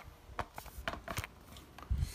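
Handling noise of a laptop being turned over in the hands: a few light clicks and taps on its metal case, then a dull thump near the end.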